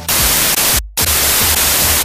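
Loud static hiss, like a detuned television: an even white-noise sound effect that cuts out for a split second just before the middle and then resumes.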